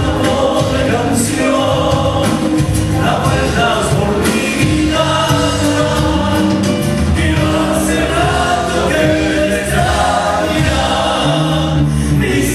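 A live band playing a zamba, an Argentine folk song: male voices singing together over acoustic guitar, electric bass, electric guitar and drums.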